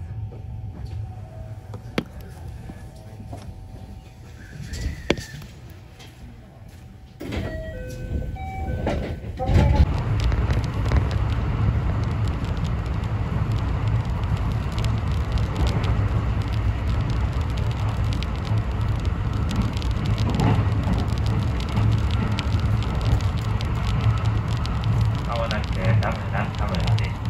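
Interior noise of an electric commuter train pulling away and gathering speed: fairly quiet at first with a few faint clicks, then about seven seconds in the running noise rises sharply with a short run of brief tones stepping in pitch. From about ten seconds in it settles into a loud, steady low rumble of the train running on the rails.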